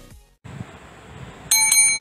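Electronic intro music fading out, a short silence, then a bright bell-like ding struck twice in quick succession, ringing with high clear tones.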